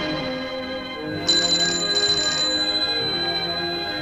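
Film score music with held notes, and about a second in a telephone bell rings once, for just over a second.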